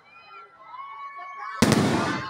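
An aerial firework shell bursting with a single loud bang about one and a half seconds in, its sound fading away after.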